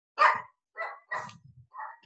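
A dog barking four times in quick succession over a video call's audio, the first bark the loudest.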